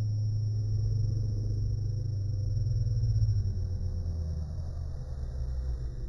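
A low, steady rumble that swells about three seconds in and then eases off.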